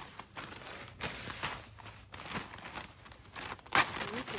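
Plastic bag of potting-mix amendment rustling and crinkling as it is handled and its contents go into a plastic tote, with scattered crackles and one sharp knock near the end.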